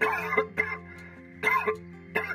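A man coughing in short bursts, three or four coughs, with steady background music underneath.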